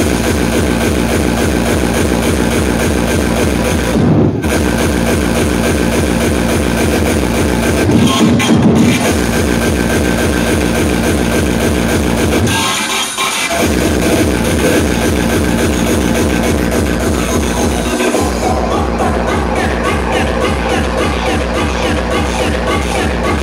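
Loud electronic dance music from a DJ set over a club sound system, driven by a steady kick drum; the bass briefly drops out a few times, longest about 13 seconds in, before the beat comes back.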